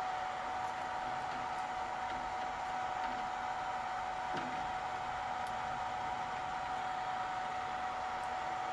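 Steady hiss with a constant thin whine underneath, unchanging throughout.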